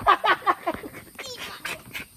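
A person laughing: a quick run of short voiced bursts about a second long, then a few more scattered bursts.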